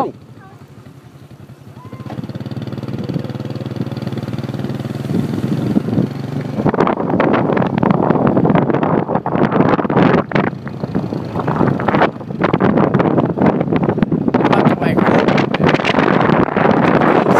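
Small motorcycle engine running with a steady hum. From about seven seconds in, a loud, uneven rushing noise covers it as the bike gets moving.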